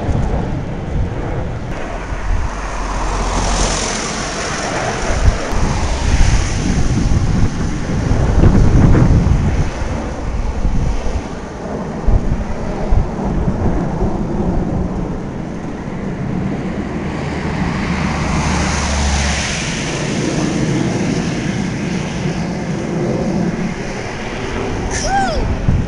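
Formation of Alpha Jet trainers roaring by overhead: a loud, rumbling jet-engine noise that swells and fades twice, once in the first half and again in the second half, with wind buffeting the microphone.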